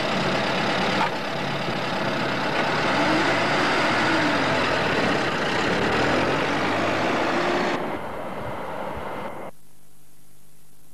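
An old sedan's engine running as the car pulls away and drives off, with a faint rising and falling engine pitch and a sharp knock about a second in. The sound drops a little near the end and cuts off suddenly.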